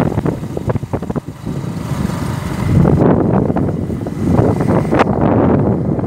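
Motorcycle running along at riding speed, with wind buffeting the phone's microphone in uneven gusts; it is louder from about three seconds in.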